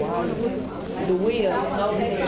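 Background chatter: several people talking at once in a room, with no single voice clear enough to make out.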